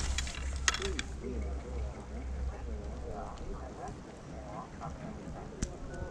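Skis gliding slowly through deep fresh powder, a low rumble that is heaviest in the first two seconds, with faint voices in the background and a couple of sharp clicks.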